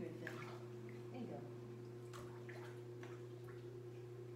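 Light splashes and drips of pool water in a small indoor hydrotherapy pool as a dog is held in the water, over a steady low hum.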